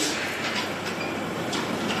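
Steady hiss of room noise with a few faint clicks.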